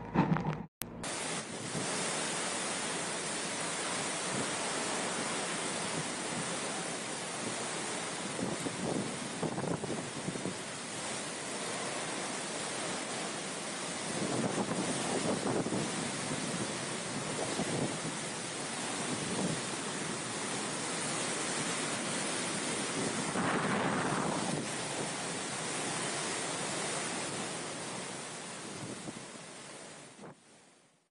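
Cyclone wind rushing through trees in a steady roar that swells in gusts, with wind buffeting the microphone.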